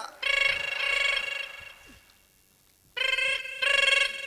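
Phone ringtone: a steady electronic tone in bursts, one long ring and then two short rings close together near the end.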